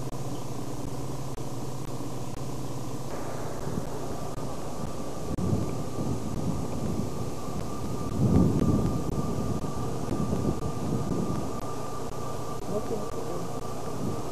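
Wind buffeting a camcorder microphone: irregular low rumbling gusts, strongest in the middle, over a steady hiss.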